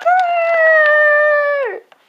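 A child's voice holding one long, loud, high-pitched cry for about a second and a half, which slides down in pitch and stops shortly before the end.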